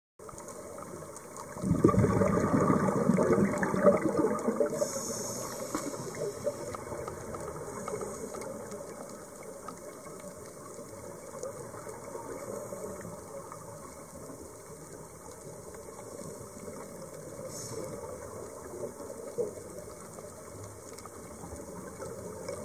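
Scuba diver's exhaled breath bubbling out of a regulator underwater: a loud rush of bubbles about two seconds in that lasts a couple of seconds, then a lower steady underwater rushing.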